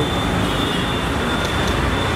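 Steady street traffic noise with a vehicle engine running close by, under a thin, steady high whine.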